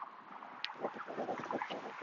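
Soft scuffing and rustling from a crossover step and throwing motion: a quick run of light shoe scuffs on a rubber runway and jackets brushing, starting about half a second in, over faint wind.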